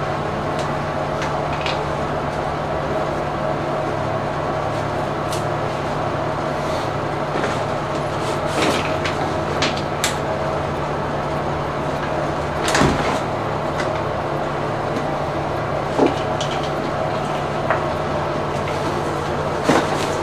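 Steady low mechanical hum of a fan, with a few brief clicks and knocks of things being handled, the loudest about two-thirds of the way in.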